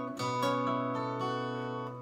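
Twelve-string acoustic guitar: a chord struck just after the start and left to ring, its notes slowly fading.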